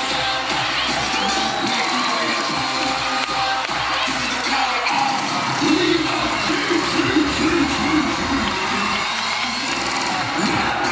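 Cheerleading routine music played loud over an arena sound system, with the crowd cheering over it.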